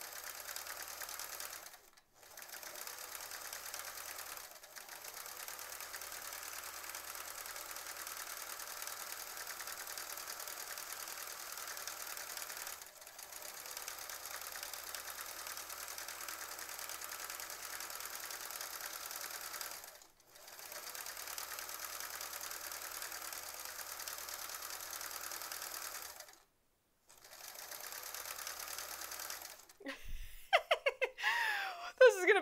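Sewing machine stitching steadily during free-motion quilting, the quilt being moved by hand under the needle. It pauses briefly several times and stops for a moment near the end before starting again.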